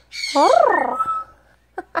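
Yellow-naped Amazon parrot calling: a short harsh squawk, then a rising-and-falling call and a brief thin high note.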